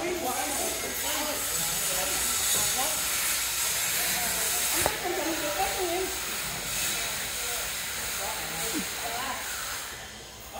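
People talking indistinctly over a steady hiss, with one sharp click about five seconds in.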